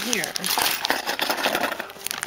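Small clear plastic bag crinkling and rustling as hands handle it, with small plastic bow cabochons inside.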